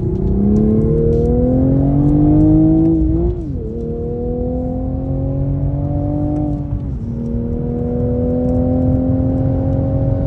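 Manual Toyota GR Supra's turbocharged 3.0-litre inline-six heard from inside the cabin under hard acceleration: the engine note climbs through the gears, with two upshifts, about three seconds in and about seven seconds in, each a sudden drop in pitch before it climbs again.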